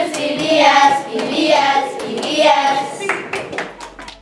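A group of children singing together and clapping their hands in a steady rhythm, fading near the end.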